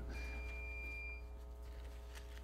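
Quiet room tone over the meeting's sound system: a low, steady electrical hum, with a faint, thin, steady high tone for about the first second.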